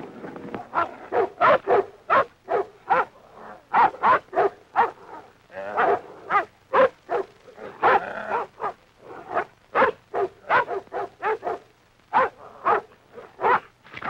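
Dog barking over and over, about two to three barks a second, with one longer bark about eight seconds in.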